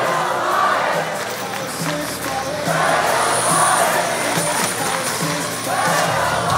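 Background music playing over the arena's sound system, with crowd noise echoing in a large hall.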